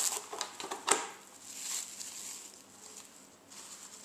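Cling film crinkling and crackling as it is stretched over a plastic tray and pressed down around the rim, with a sharp crackle about a second in and fainter rustling after.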